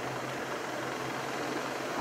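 Steady rushing noise with a faint low hum underneath, from riding along on a bicycle: wind and rolling noise on the microphone.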